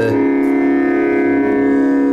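Carnatic music with a steady drone on one pitch, with no ornamented singing over it, in a pause between the vocalist's phrases.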